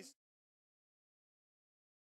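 Silence: the sound track drops out completely after the last trace of commentary cuts off at the very start.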